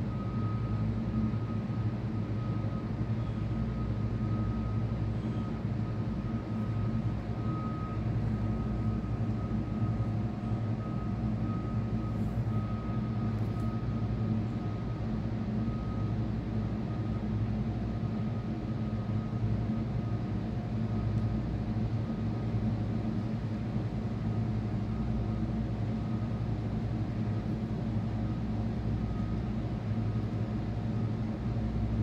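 Steady mechanical hum with a thin, high-pitched whine running through it, unchanging throughout.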